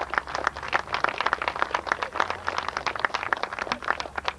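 Audience applauding, with distinct hand claps several times a second.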